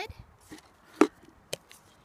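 Two short, sharp knocks about half a second apart, the first one louder, against a quiet background.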